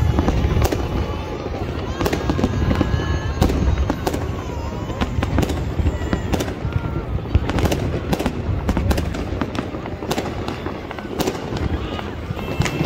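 Aerial fireworks bursting overhead: an irregular, dense run of sharp bangs and crackles over a continuous low rumble.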